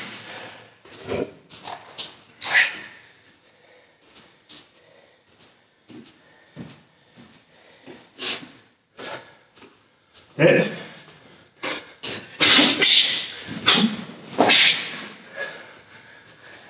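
A man's sharp, forceful breaths out timed with karate punches and kicks in shadow combinations, short bursts with quieter gaps, growing louder and closer together from about ten seconds in.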